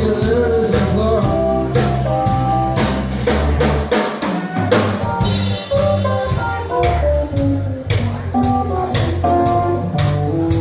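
Live blues band playing an instrumental passage on electric keyboard, drum kit and electric bass, with steady drum hits under the keyboard lines. The bass drops out briefly about four seconds in.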